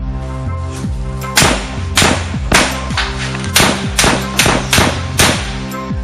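A burst of about eight sharp gunshots, unevenly spaced over roughly four seconds starting about a second and a half in, over steady background music.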